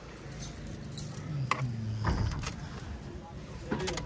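A bunch of car keys jangling, with a few sharp clicks, as a hand works the key in a car's ignition.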